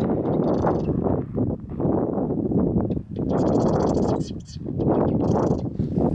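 Birds in the lakeside reeds giving harsh, high, rattling calls in three short bursts, the longest about three seconds in. Underneath is a loud, steady low rush of wind on the microphone and footsteps on the shore.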